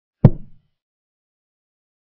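Digital chess-move sound effect: a single short wooden knock as a move, White's castling, is played on the board. It dies away within about half a second.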